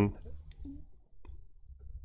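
A few faint, short clicks over low room hum during a pause in speech, as a computer is used to go back one slide in a presentation.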